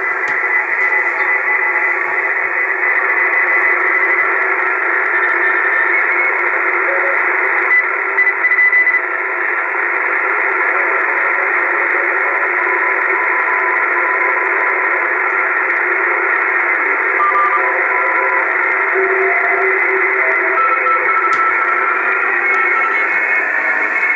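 Yaesu HF transceiver's speaker playing several Morse code (CW) stations on the 160 m band, keyed tones at different pitches over a hiss of band noise, with the local noise being cancelled by an anti-noise antenna.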